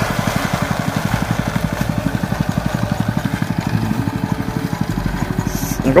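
Engine-driven rice thresher running steadily, its motor giving a rapid, even beat.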